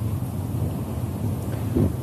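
Steady low rumble of wind on a clip-on microphone outdoors, with a man's voice starting faintly near the end.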